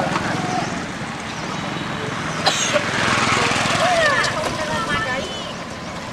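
A small engine running steadily with a regular low pulse under broad outdoor noise, with faint high gliding squeaks about four seconds in.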